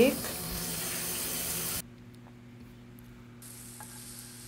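Minced onions and garlic sizzling softly in hot oil in a frying pan, a steady hiss that cuts off abruptly about two seconds in, leaving only a faint low hum.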